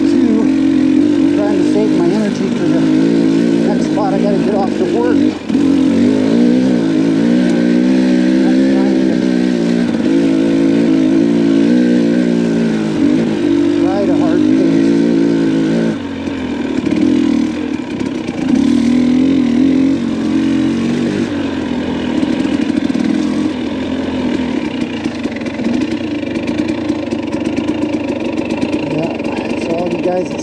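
Dirt bike engine running at low speed on a rough trail, its pitch rising and falling as the throttle is worked.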